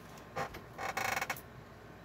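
Tarot cards being shuffled: a single flick, then a quick burst of rapid card clicks about a second in that lasts around half a second.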